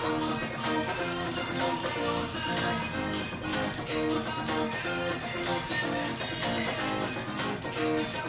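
Cort electric guitar picking a quick single-note melody line over a backing track with a steady percussion beat.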